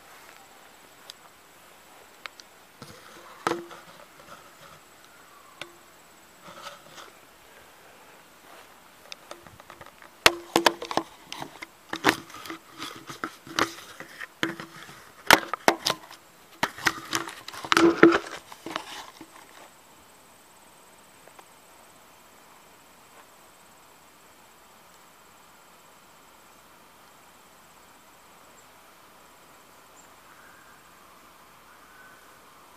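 Handling noise from a camera being carried and set down: a run of irregular sharp clicks and knocks, densest and loudest in the middle, that stops about two-thirds of the way through, leaving only a low steady background.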